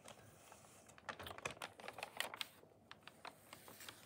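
Paper rustling and crackling as a sheet is handled and shifted: a quick run of small crackles about a second in, then a few scattered ticks.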